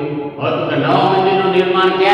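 A man lecturing in Gujarati, with a short pause about half a second in.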